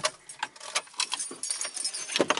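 Car keys jangling in a run of irregular light metallic clicks.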